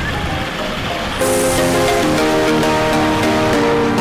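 Steady rush of falling water from a waterfall for about a second, then background music with held chords comes in suddenly and takes over.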